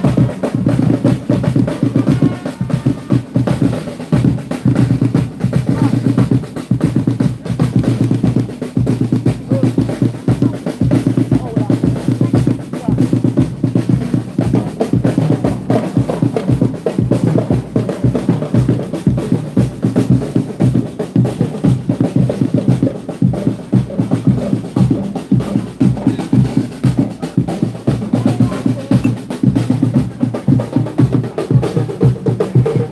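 Drums played without pause in a fast, rolling rhythm, with snare and bass drum, as percussion accompaniment to a street procession.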